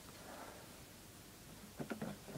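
Quiet room with faint rustling as a clear plastic blister package is handled, and one short, sharper sound near the end.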